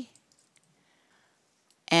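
A few faint clicks of a computer keyboard being typed on, otherwise near silence.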